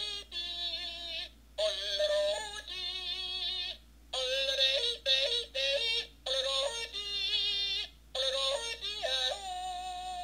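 Accoutrements Yodeling Pickle toy playing its recorded yodel through the small speaker in its tip: a run of short sung phrases that leap between low and high notes, with brief breaks between them.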